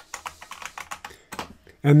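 Computer keyboard typing: a quick run of keystroke clicks, several a second, stopping as a man starts speaking near the end.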